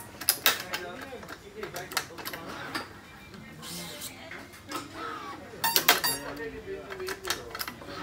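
Badminton racket string being hand-woven through the cross strings and pulled through. The string gives sharp ticks and snaps as it is drawn through and slaps the stringbed, with a cluster of loud snaps about six seconds in.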